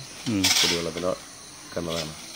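A man's voice speaking in two short phrases, with a pause in between.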